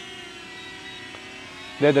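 DJI Flip quadcopter's propellers and motors whining steadily as the drone comes down to land close by after a return-to-home command.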